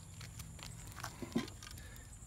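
Pool skimmer trap lid being lifted off its opening: a few light clicks and one sharper knock about a second and a half in. Crickets chirp steadily and faintly behind.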